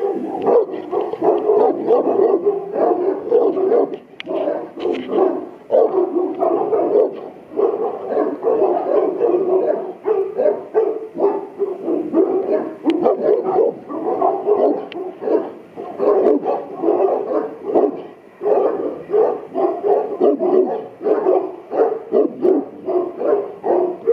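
A Boerboel barking aggressively in quick, continuous runs of barks, several a second, with a couple of brief pauses.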